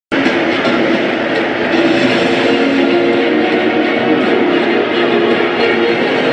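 Loud music playing over a stadium's public-address system, steady throughout.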